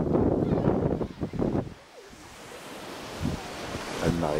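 Wind buffeting the microphone in loud gusts, dying away about halfway through, leaving the steady hiss of surf breaking on a sandy beach that slowly grows louder.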